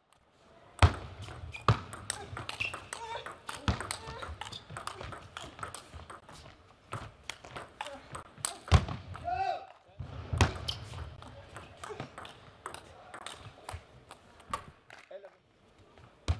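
Table tennis rallies: quick clicks of the plastic ball striking rubber-faced paddles and the table, in two rallies broken by a short pause about ten seconds in. A brief player's shout comes about nine seconds in.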